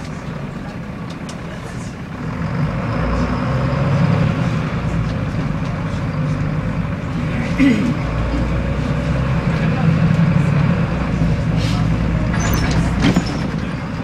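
Volvo D7C diesel engine of a Volvo B7L bus heard from inside the passenger saloon, getting louder about two seconds in as it works harder and then running on steadily. A brief clatter comes a little past halfway, and a few rattles come near the end.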